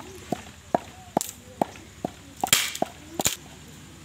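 Wooden pestle pounding whole spices in a wooden mortar: about eight sharp strikes, roughly two a second, stopping shortly before the end. The strikes in the second half are the loudest.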